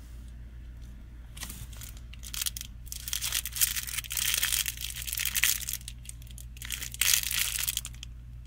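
Clear plastic wrapper crinkling in bursts as a hand handles the squishy toy sealed inside it. The crinkling is heaviest through the middle and again near the end, over a steady low hum.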